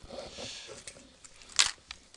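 Quiet room sound with faint handling noise, then a sharp click about one and a half seconds in and a smaller one just after.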